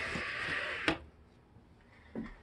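Cordless cellular shade pulled down by hand: the fabric slides and rustles for about a second, then a single sharp click.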